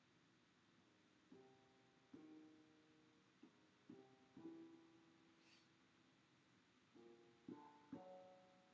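Faint keyboard notes in about eight short chord-like groups of a few tones each, every group starting sharply and dying away quickly: attempts at a B-flat major chord on a MIDI keyboard, which the trainer then marks as wrong.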